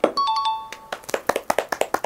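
A short, bright multi-note chime sound effect, followed by a quick run of hand claps, about nine a second.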